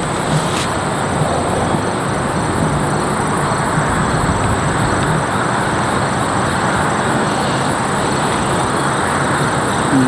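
Steady rushing background noise with no speech and no distinct events, with a faint low hum early on; it cuts off abruptly at the end.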